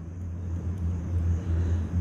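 A steady low hum with faint background hiss.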